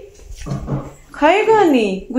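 A drawn-out voiced call, rising and then falling in pitch, lasting under a second and starting a little past the middle.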